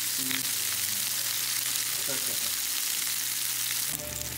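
Cubed potatoes, mushrooms and pepper sizzling steadily in hot oil in a small nonstick skillet on a gas flame.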